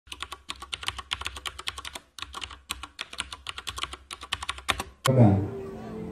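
Fast runs of computer-keyboard typing clicks with short pauses between runs, a typing sound effect. About five seconds in it cuts off abruptly and gives way to louder live band and PA sound with held tones.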